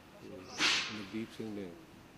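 A man speaking in Punjabi, with a short, loud hiss about half a second in.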